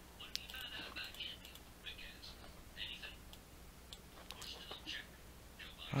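Faint scattered clicks of computer input devices, with brief soft hissy sounds over a low steady hum.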